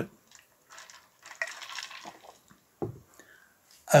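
A man drinking from a plastic tumbler: a few short sips and one longer sip, then a low swallow about three seconds in.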